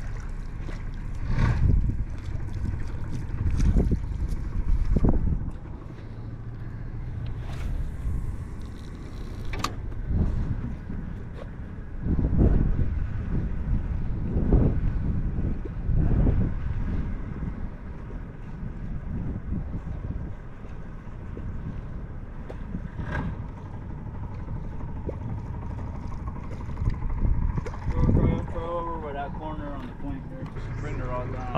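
Wind buffeting the microphone in irregular low gusts, with water lapping at the hull of a small fishing skiff. A few light ticks come through, and a voice starts near the end.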